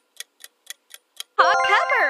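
Quiz countdown timer ticking about four times a second, then about one and a half seconds in a loud answer-reveal jingle with swooping tones that settles into a ringing chord, marking the correct answer.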